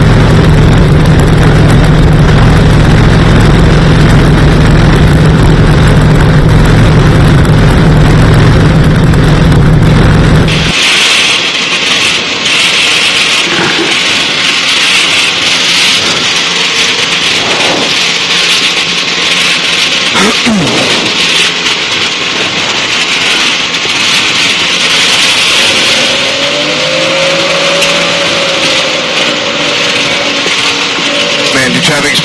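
Engine of a Challenger light-sport aircraft running steadily on the ground. About ten seconds in, the sound changes abruptly: the deep engine note drops away, leaving a thinner hiss with a few faint pitch glides. Near the end, a wavering rising-and-falling tone joins in.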